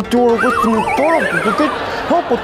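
A horse whinny sound effect: one trembling call that falls in pitch over about a second and a half. It is laid over a man's rhythmic, repeated chanting.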